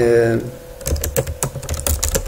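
Computer keyboard being typed on, a quick run of key clicks as a word is typed in.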